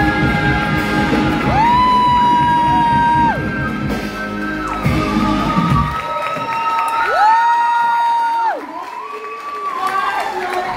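Live band and two female singers ending a pop song: the band plays under long held high sung notes, then the band drops out about six seconds in and a last long note is held and slides off. Audience cheering and whoops join in.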